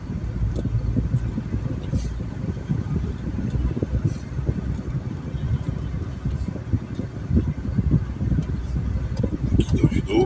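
Steady low rumble of a car's engine and tyres heard from inside the cabin while driving slowly along a village road.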